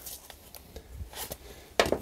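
Faint handling sounds of electrician shears being slid into a nylon belt pouch: light rustling of the fabric with a few small ticks and knocks. Speech begins near the end.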